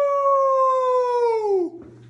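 A man howling like a wolf through cupped hands: one long held howl that sinks slowly in pitch, then drops away and stops shortly before the end.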